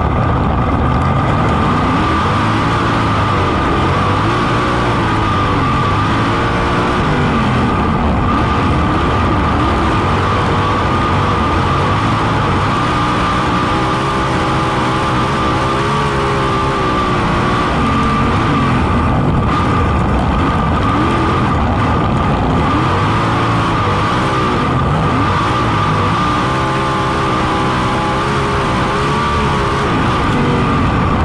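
Onboard sound of a USAC 410 non-wing sprint car's 410-cubic-inch methanol V8 racing on a dirt oval, its pitch rising and falling as the throttle comes off for the corners and back on down the straightaways. A steady high tone runs above the engine.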